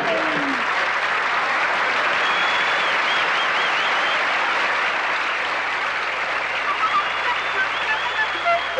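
Studio audience applauding steadily, with laughter at the very start and a high wavering whistle about two to four seconds in.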